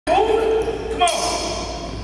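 Basketball bouncing on a gym's wooden floor, with voices echoing in the hall and a shout of "come on" about halfway through.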